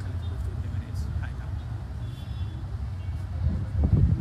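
Indistinct voices of a crowd jostling around a car, over a steady low rumble, with one sharp thump near the end.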